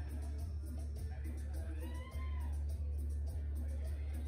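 Steady low electrical hum from the stage sound system while the band is idle, under faint voices. About halfway through there is a short tone that rises and then falls in pitch.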